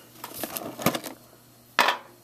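A metal Pokémon card tin being handled and opened: a few light metallic clicks and taps, then a louder clack near the end.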